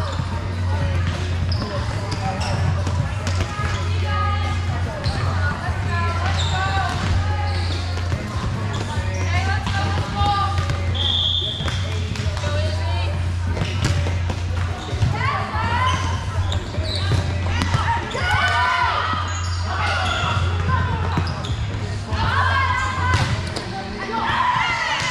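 Indoor volleyball match: many players and spectators talking and calling over a steady low hum, with the ball being hit and bouncing on the hardwood court. A referee's whistle blows once, briefly, about eleven seconds in.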